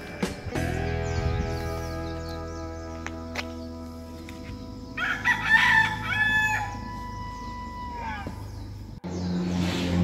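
Sustained background music chords that slowly fade and cut off about nine seconds in. About five seconds in, a bird gives one long call of nearly two seconds that rises, holds and then falls.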